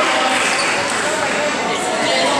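Basketball game sounds in a reverberant gym: a steady mix of indistinct voices from players and spectators, with a basketball bouncing on the court.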